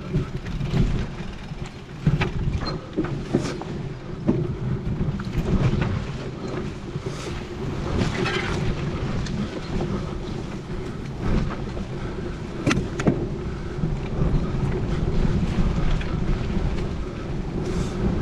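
Mountain bike ridden fast over a bumpy grassy forest singletrack: a steady rumble from the tyres and the frame, with wind buffeting the camera microphone. Frequent sharp knocks and rattles come as the bike hits bumps.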